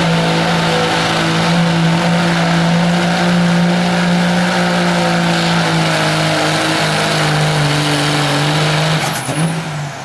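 Dodge Ram pickup's Cummins diesel held wide open at high revs under heavy load, pulling a sled, its pitch sagging slightly partway through. About nine seconds in the throttle is let off and the engine note drops away.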